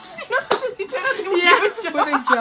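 Two women laughing loudly, with one sharp smack of a hand about half a second in.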